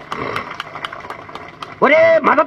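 A pause in a man's speech over a microphone: low background noise with scattered faint clicks, then his voice comes back loud near the end.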